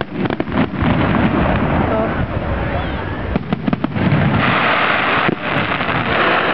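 Fireworks display: aerial shells bursting with several sharp bangs, a few near the start and a cluster a little past the middle. A dense hiss of crackling rises from about four and a half seconds in.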